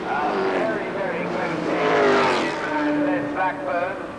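Racing saloon car engines at full song as several cars pass, their engine notes sliding down in pitch. The sound is loudest about two seconds in as one car goes by close.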